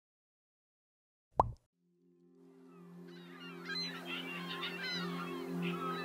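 A short plop that falls in pitch about a second in, then a sustained music chord and a flock of gulls calling, fading in and growing louder.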